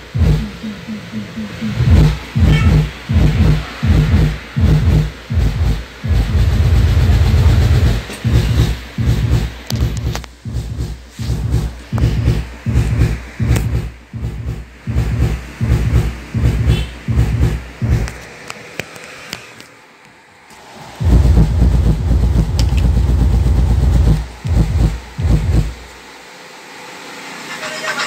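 Subwoofer driven by a 5.1-channel MOSFET power amplifier with the sub volume turned up, playing music whose deep bass beats come in a steady rhythm with long held bass notes. The bass is loud enough to set the shop's metal roof sheet vibrating, with a buzzing rattle riding on the beats. The bass stops about two seconds before the end.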